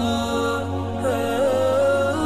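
Background music: a single voice chanting a slow, ornamented melody with long held notes over a low steady drone.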